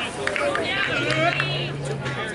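Overlapping voices of players and spectators calling out at once, with no clear words, and a few sharp knocks near the start. A low steady hum comes in about halfway through.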